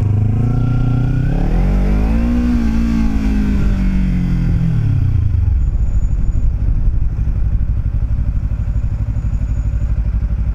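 Kawasaki Ninja 300 parallel-twin engine revving up under acceleration for about two and a half seconds, then dropping back as the throttle closes. From about five seconds in it runs low and steady under wind and road noise on the helmet microphone.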